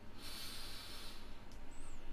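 A person's breath out near the microphone, a hissy rush lasting about a second, followed by faint background hiss.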